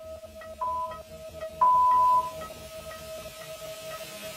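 Interval-timer countdown beeps over electronic background music: one short beep about half a second in, then a longer, louder beep about a second and a half in that marks the end of the exercise interval.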